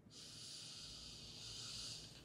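A woman's faint, long breath through the nose, lasting nearly two seconds: an exasperated sigh.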